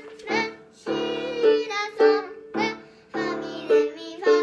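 Young children sight-singing a short new melody in a series of short sung notes, with a musical instrument playing along.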